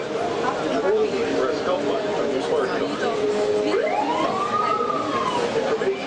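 Several people talking at once in a crowded, echoing hall. About three and a half seconds in, a single siren-like tone sweeps quickly up in pitch, then slowly falls away over about two seconds.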